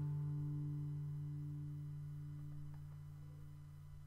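A guitar's final chord ringing out and slowly dying away, the higher notes fading first.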